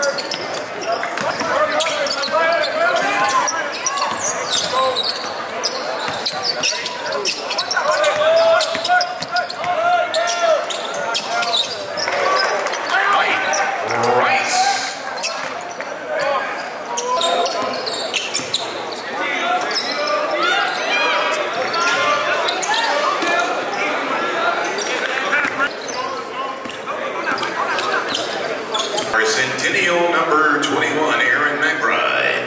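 Basketball dribbled on a hardwood gym floor, with voices of players and crowd echoing through a large gym.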